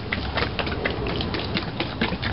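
Sandalled footsteps on a gritty, leaf-strewn driveway: a run of irregular small clicks over a low steady rumble.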